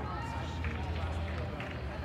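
Scattered distant voices of players and spectators calling out in a large indoor sports hall, over a steady low hum, with a few faint knocks.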